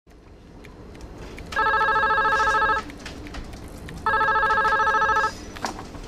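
Telephone ringing: two trilling rings, each just over a second long, the first about a second and a half in and the second about two and a half seconds later.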